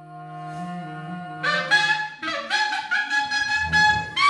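Clarinet and cello playing contemporary chamber music. A low held note swells up from silence, then from about one and a half seconds in come loud, short, high notes.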